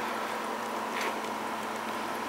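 Steady trickling and splashing of nutrient solution falling through a vertical PVC hydroponic tower, fed by a pump that runs continuously.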